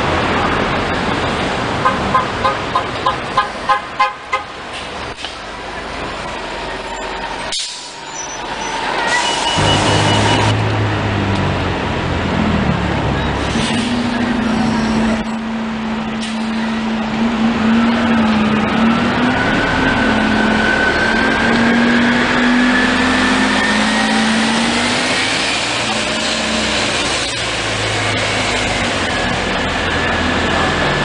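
Orion VII CNG city bus pulling away from the curb, with a whine that climbs steadily in pitch as it picks up speed, over street traffic. Near the start, a quick run of about eight short beeps.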